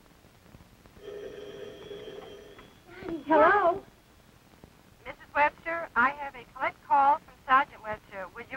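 A telephone ringing once for about two seconds, about a second in, as the collect call goes through; voices follow on the line.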